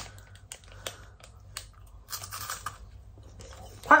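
Crisp crunching of a person biting into and chewing a cream wafer bar: a scatter of small crackles close to the microphone.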